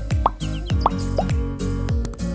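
Background music with a steady beat of falling bass drops, overlaid by three short rising pops.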